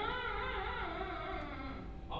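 A man's voice drawing out one long vowel: it glides up at the start, is held for nearly two seconds, and breaks off abruptly at the end.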